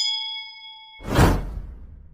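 Notification-bell ding sound effect ringing for about a second, then a loud whoosh about a second in that dies away.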